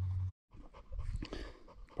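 A steady low hum cuts off abruptly at an edit. After a brief gap comes soft, irregular rustling and handling noise close to the microphone, with a few small clicks.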